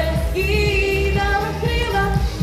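A young woman singing a Ukrainian song into a microphone over backing music with a steady beat, holding one long note through the middle.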